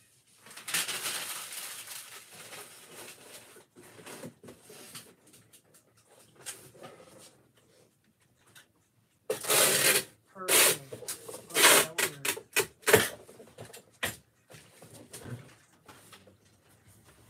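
Objects being handled at a workbench: rustling and scraping, then a run of loud, short rasping bursts in the second half.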